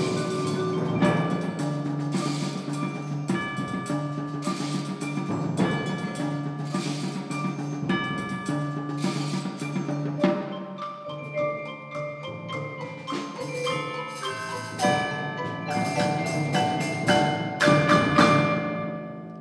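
A percussion ensemble plays live on mallet percussion and drums: marimba, chimes and other pitched instruments ring over a low steady figure, with a struck accent about once a second. About ten seconds in, the texture thins to scattered single notes, then builds to a loud hit at the end.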